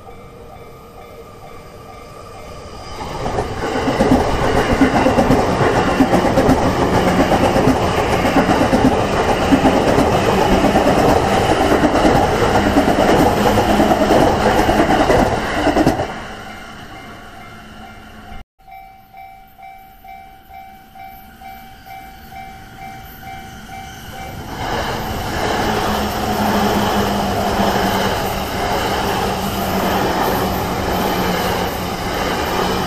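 Japanese level-crossing warning bell ringing in a steady repeat of about two strikes a second, while E235-series Yamanote Line electric trains rumble over the rails. The train noise swells loud from a few seconds in for about twelve seconds, drops back to the bell, and builds again near the end as a train runs across the crossing.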